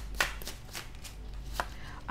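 A small deck of stiff playing-card-style keyword cards being shuffled by hand: a run of sharp, irregular card clicks and snaps, the loudest a fraction of a second in.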